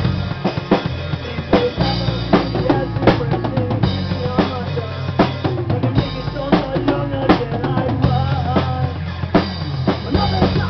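Punk rock band playing live: drum kit with fast snare and bass drum hits under electric guitars and bass, in a rough-sounding room recording.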